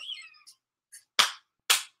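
Three sharp hand claps, about half a second apart, each cut off quickly.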